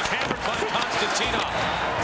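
Ice hockey game sound: arena crowd noise and voices with a few thuds, typical of body checks.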